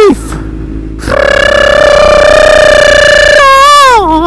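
A man's loud, high-pitched yell, held steady for about two seconds and then falling in pitch near the end.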